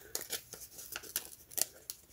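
Planner sticker being peeled off its paper backing sheet by hand: a quiet run of small, irregular crackles and ticks.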